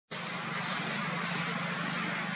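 Steady outdoor background noise: a constant low hum under an even high hiss, with no distinct calls or knocks.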